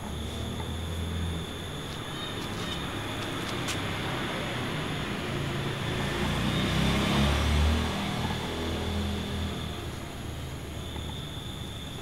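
A low motor rumble, swelling about six to eight seconds in and then easing off, under a thin steady high insect trill that drops out for a few seconds in the middle.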